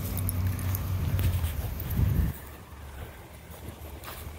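Low rumbling movement noise from a body-worn camera as a person walks, with a few faint clinks in the first second. The rumble swells, then drops off suddenly a little over two seconds in.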